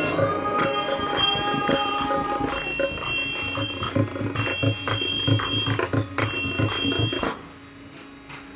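Small hand cymbals (jalra) struck in a steady bhajan rhythm, about three strikes a second, each ringing on. The clashing stops abruptly about seven seconds in.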